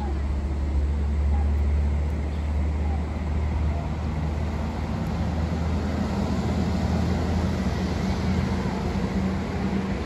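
Steady low rumble of street traffic and a running vehicle engine. Late on, the deep rumble gives way to a higher hum.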